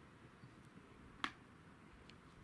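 A single sharp click, a little over a second in, as a small object is handled on the ground, over faint background hiss.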